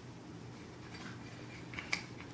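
Faint handling of a toy cap-gun AR-15 replica and its magazine: a few light clicks and rattles of parts, with a sharper click near the end.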